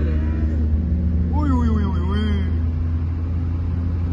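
Steady low drone of a car's engine and tyres heard from inside the cabin while driving at speed on a highway, with a voice briefly about a second and a half in.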